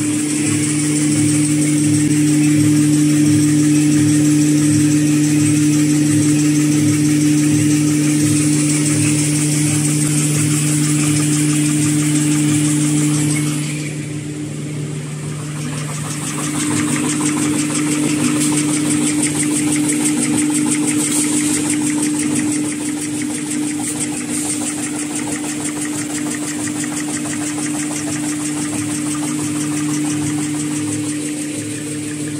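Laminated N/Z-fold hand towel paper folding machine running: a loud, steady machine hum with a regular low beat of about two a second. The level drops briefly about halfway through, then picks up again.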